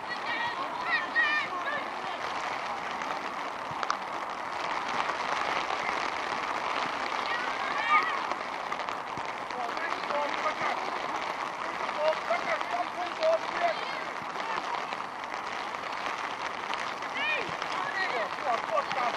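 Outdoor youth football match ambience: scattered distant shouts from players and spectators over a steady hiss, with one short sharp knock about four seconds in.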